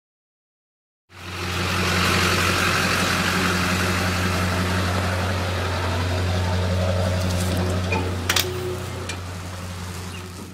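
Engine of a trailer-mounted concrete pump running steadily with a low, even hum, cutting in abruptly about a second in. A couple of sharp clicks come near the end.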